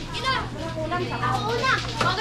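Children shouting and calling out to each other in high, excited voices while playing, over a steady low hum.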